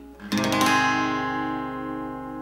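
Acoustic guitar, capoed at the first fret, strummed once in an open G chord shape about a third of a second in and left to ring, fading slowly.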